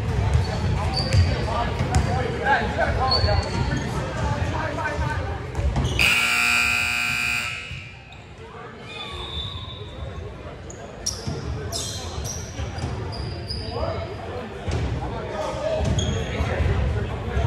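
Gym scoreboard buzzer sounding one steady blast of about a second and a half, about six seconds in, amid voices and ball thuds in a large echoing gym. Short high sneaker squeaks on the hardwood follow in the quieter second half.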